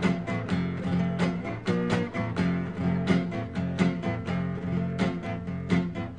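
Acoustic guitar strumming a steady rhythm in an instrumental break of a song, with no singing.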